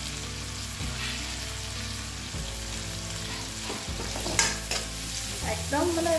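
Onion, tomato and spices sizzling in hot oil in an aluminium kadai, with a spoon knocking and scraping against the pan a few times as it is stirred.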